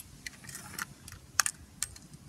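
A few sharp metal clicks as the wire springs and arms of a wooden Victor rat trap are handled, the loudest about one and a half seconds in.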